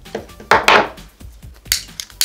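Plastic scraping and handling as the tip is pulled off a plastic highlighter pen: a loud rasping scrape about half a second in and a shorter one near the end.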